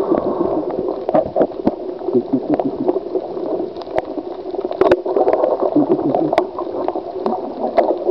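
Muffled underwater noise picked up by a camera in its housing: a steady gurgling wash of water with many sharp clicks scattered through it.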